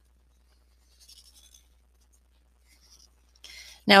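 Faint scratching of a permanent marker's felt tip drawing on paper, in a few short strokes about a second in and again near three seconds.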